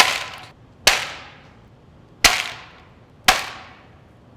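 Sheets of cooled lemon-drop hard candy, a sugar glass, dropped one after another onto a metal sheet pan: four sharp clatters with a ringing tail each, the candy shattering along its webbing into loose drops.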